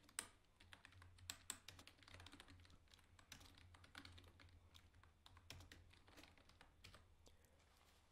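Faint computer keyboard typing: irregular runs of keystrokes, thinning out near the end.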